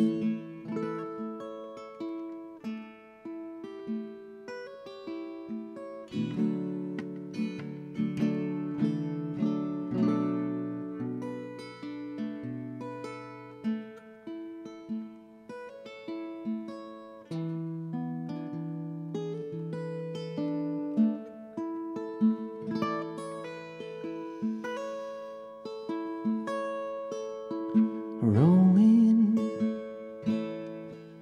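Solo acoustic guitar instrumental break, notes and chords picked one after another and left to ring. A voice comes in briefly near the end.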